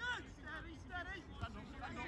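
Faint, distant shouts and calls of footballers on the pitch, several short high calls spread through the moment.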